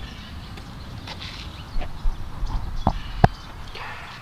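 Handling noise on an Azden SGM-2X shotgun/stereo microphone picked up by the microphone itself: a few soft knocks, then two sharp clicks about three seconds in as its low-cut filter switch is flipped.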